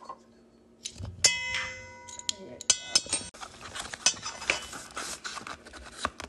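A metal measuring spoon strikes the stainless steel mixing bowl twice, about a second and a half apart, and the bowl rings on after each strike. It is followed by a busy run of scraping and small clicks from stirring the dry ingredients in the bowl.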